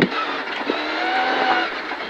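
Mitsubishi Lancer Evolution X rally car's turbocharged four-cylinder engine pulling hard under acceleration, heard from inside the cabin. Its pitch rises slightly as the car gains speed.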